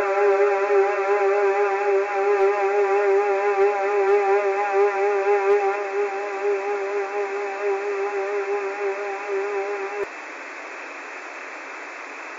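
A single held musical tone with a steady, even vibrato over a bed of static hiss, fading slowly and then cutting off suddenly about ten seconds in, leaving only the steady hiss.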